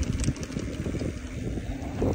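Mountain bike rolling along a dirt trail: wind buffeting the microphone, with small rattles and clicks from the bike over the rough ground.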